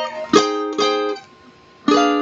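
Requinto guitar playing slow, separate plucked chords: two chords about half a second apart, a short pause, then another chord near the end, each left to ring.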